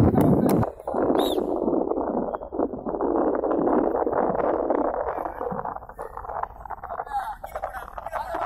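Indistinct voices of several people calling out, no clear words, over a rough steady background.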